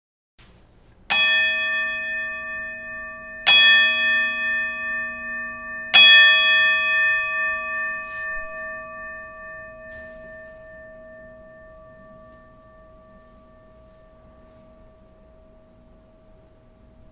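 A bell struck three times, about two and a half seconds apart, each strike ringing on and the ringing fading slowly away.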